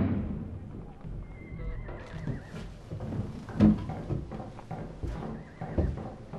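A horse whinnies once, with a wavering call, and its hooves clop irregularly, as background music fades out at the start.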